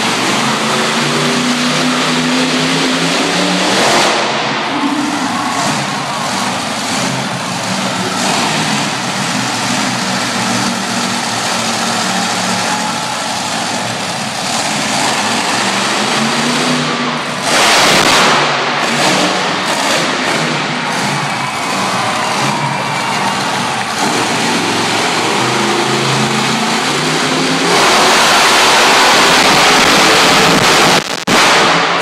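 Monster truck's engine running and revving hard, its pitch rising and falling, with two louder surges, one about two-thirds in and one near the end.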